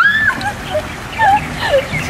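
A woman's short, high-pitched wordless squeals and whimpers, several of them rising and falling in pitch, the nervous noises of someone stepping onto a wobbly kayak.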